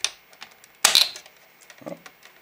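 Sharp plastic clicks and knocks as the opened lamp housing is handled and turned over, with one loud double clack about a second in.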